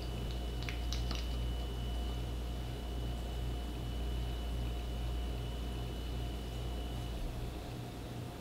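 Steady low electrical or fan-like hum of room tone, with a thin high whine that stops about seven seconds in; a few faint clicks about a second in.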